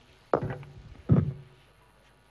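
Two dull thumps under a second apart, the second the louder, each dying away quickly.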